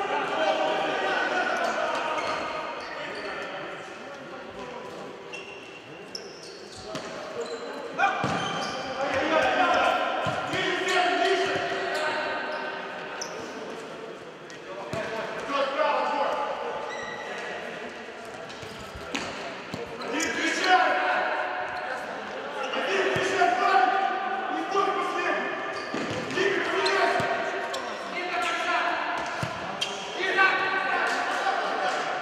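Futsal match in a large sports hall: voices calling out across the court, with occasional thuds of the ball being kicked and bouncing on the hard floor, all echoing in the hall.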